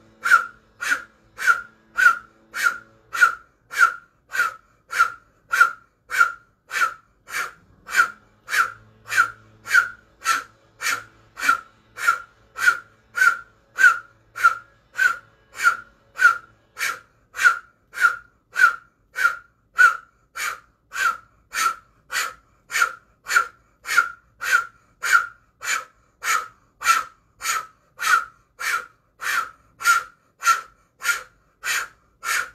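Sharp, forceful breaths pushed out through the mouth in a steady rhythm, about two a second, paced to fast arm swings in a Kundalini yoga breathing exercise.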